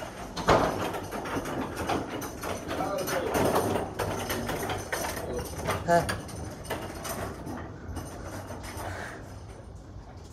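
Handling noise from a phone held against clothing: irregular rubbing and scraping, with a sharp knock about half a second in.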